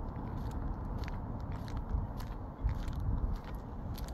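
Footsteps crunching on sandy gravel at a walking pace, about two steps a second, with wind buffeting the microphone in a steady low rumble.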